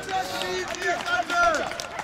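Several people shouting and calling to one another at once, their voices overlapping, with a few short knocks among them.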